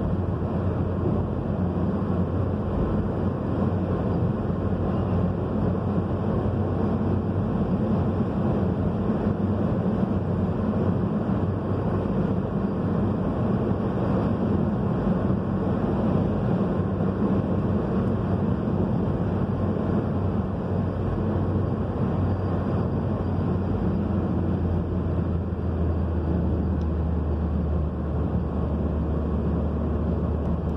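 Car cabin noise while driving on a highway: a steady low rumble of engine and tyres on the road. The low hum changes slightly near the end.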